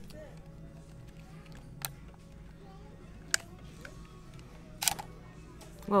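Canon EOS Rebel T5i DSLR clicking as it is handled: three sharp single clicks, about two, three and a half and five seconds in, the last the loudest.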